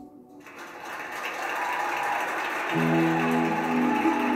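Music: a wash of backing music swells up from about half a second in, and electric guitar notes played through a Marshall amp come in strongly about three-quarters of the way through.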